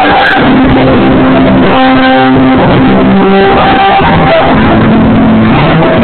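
A live band playing loud, with long held keyboard notes over the rhythm.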